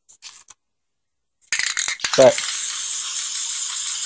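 Aerosol spray paint can spraying: a steady hiss that starts about a second and a half in, with a few rattling clicks as it begins.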